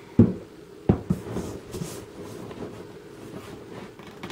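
Cardboard box pushed in against a particleboard bookcase panel: two sharp knocks less than a second apart, then light scraping and handling clicks.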